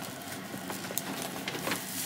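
Thin plastic bag of seafood boil rustling and crinkling as it is handled, with a few sharp crackles about a second in and near the end.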